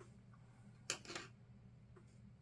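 A small screwdriver set down on a bench mat: one sharp click about a second in, followed by a softer knock, over a low steady hum.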